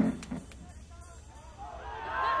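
Amplified electric guitar and singing cut off abruptly right at the start: the sound system goes dead mid-song. Only faint voices are left, growing a little louder near the end.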